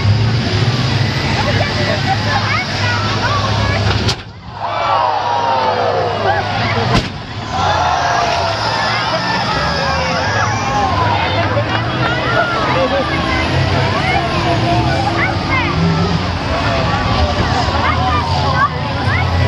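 Demolition-derby school bus engines running in a steady low rumble, with a crowd's voices shouting and calling over them. The sound breaks off sharply twice, at about 4 and 7 seconds in.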